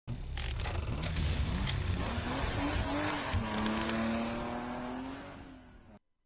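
Race-car sound effects for a TV programme's opening title: an engine revving with tyres squealing and a few sharp clicks, fading out in the last second.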